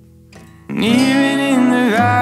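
Folk song with acoustic guitar accompaniment: a quiet fading chord, then about two-thirds of a second in a man's voice comes in loudly, singing a long held note that bends near the end.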